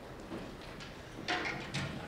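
Quiet concert hall between pieces, with faint background noise, then two short bursts of noise about two-thirds of the way through.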